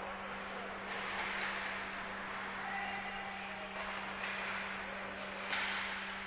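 Faint ice hockey game sounds on the rink, with skates on the ice and a few light knocks of sticks or puck, over a steady electrical hum.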